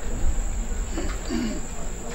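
Steady high-pitched trill of crickets over a low electrical hum, with a faint, brief murmur of a voice about halfway through.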